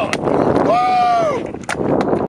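Handheld confetti poppers going off with a sharp pop, followed by a long high whoop that drops in pitch as it ends, and another sharp crack near the end.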